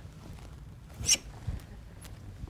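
Quiet lecture-hall room tone with a brief high rustle about a second in and a soft knock half a second later.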